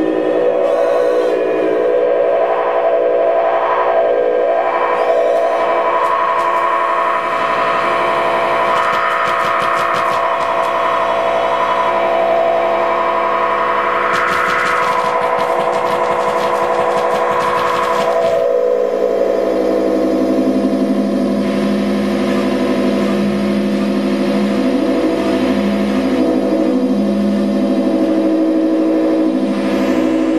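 Electronic music from a reacTable, a tabletop modular synthesizer: layered sustained synth drones with echo. A fast pulsing texture runs through the middle, then the sound settles into a lower drone.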